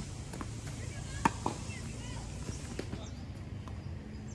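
Tennis ball struck by a racket, with a sharp, loud hit about a second in followed closely by a lighter knock. Fainter hits and bounces follow later in the rally.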